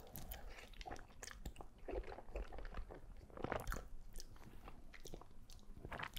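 Faint, close-miked mouth sounds of a man eating a mouthful of sauced wide noodles: wet chewing with short smacks and clicks, a little louder about two seconds in and again around three and a half seconds.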